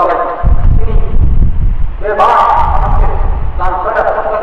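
A man's sermon voice in Bengali through a close public-address microphone. About half a second in, a loud low rumble on the microphone runs for over a second before his speech comes back strongly.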